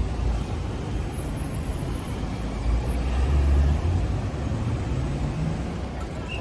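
City road traffic: a steady rumble of vehicles passing, with one engine note rising in pitch about five seconds in.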